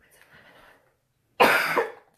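A woman coughs once, loud and sudden, about one and a half seconds in.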